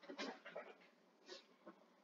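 Near silence: room tone, with a few faint, brief soft sounds.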